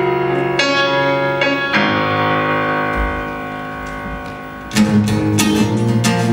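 Electronic keyboard playing chords, the last one held and slowly fading; about five seconds in, a steel-string acoustic guitar comes in loudly with strummed chords.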